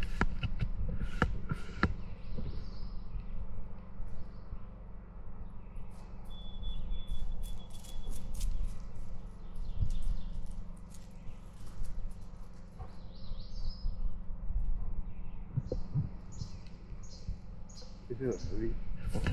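Small birds chirping outdoors, with a short high whistled note a few seconds in and more chirps later, over a steady low rumble on the microphone and scattered light knocks.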